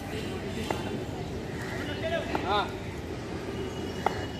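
Outdoor ground ambience: a steady background rumble with distant voices. There is one short shout about two and a half seconds in and a faint tap earlier on.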